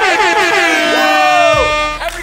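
Several young men's voices holding a long, drawn-out shouted note, the pitches sliding down and then holding steady before cutting off near the end.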